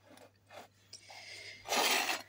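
Handling noise: a couple of soft ticks, then a faint rub, then a louder rasping rustle near the end.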